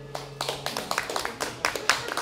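A small audience clapping in scattered, uneven claps as the song's last held note dies away in the first half second.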